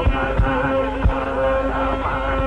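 Carnatic classical music in raga Bhairavam: a held melodic line of sustained notes with slight pitch ornaments, over three deep mridangam strokes.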